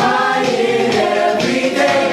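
Youth show choir of mixed boys' and girls' voices singing together in harmony.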